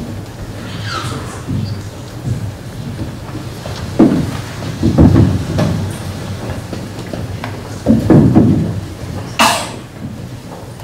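Prop boxes being set down on a wooden stage floor: dull knocks about four and five seconds in and again around eight seconds, over the hum of a large hall. A short hissy scrape sounds near the end.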